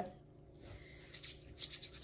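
Quiet room tone. In the second half it is broken by faint brushing and a few small clicks of hands being rubbed together.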